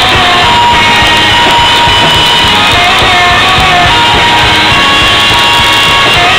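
Live rock band playing loud: electric guitar with sustained, wavering notes over a drum kit.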